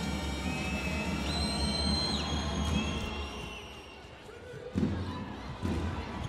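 Indoor volleyball arena: crowd noise and hall music with a heavy low hum, then a referee's whistle held for about a second signalling the serve. Near the end comes the thud of the serve, and a second ball contact about a second later.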